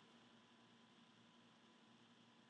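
Near silence: a faint, steady background hiss with a low hum.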